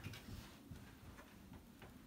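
Near silence, broken by a few faint ticks and scuffs of a climber's hands and shoes on the rock.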